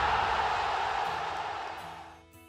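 Channel logo intro sound effect: a broad rushing noise like a stadium crowd roar, fading steadily away.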